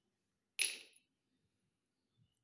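Metal parts of an electric hammer drill's tool-holder assembly knocking together as it is reassembled by hand: one sharp metallic clink with a brief high ring, about half a second in.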